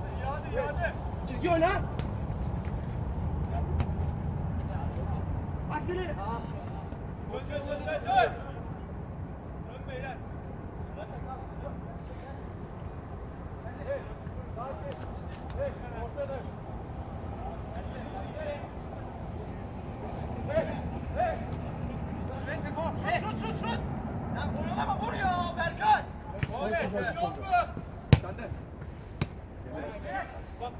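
Footballers shouting to each other across a floodlit artificial-turf pitch during play, over a low steady rumble. A single sharp thud of a ball being kicked stands out near the end.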